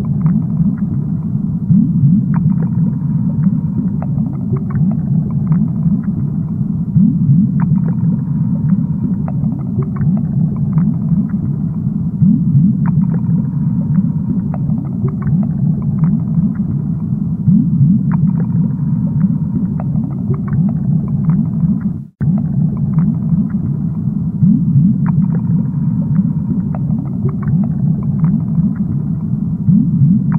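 Aquarium water heard underwater: a steady low rumble with frequent small pops and clicks of bubbles. The sound cuts out for an instant about 22 seconds in.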